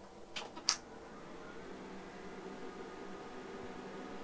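Two sharp clicks about a third of a second apart as the Quantel DPB-7001 Paintbox is switched on with its front-panel button held down. Then the powered-up rack hums steadily, slowly getting a little louder as it runs up.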